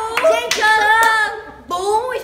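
Young girls' voices singing a melody in held, gliding notes, with a few hand claps.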